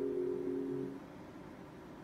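Lucky Pharao slot machine's electronic spin tune during a Power Spin: a held chord of several steady tones that cuts off about a second in.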